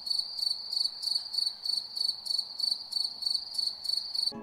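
Cricket chirping: a single high, even chirp repeating about three to four times a second.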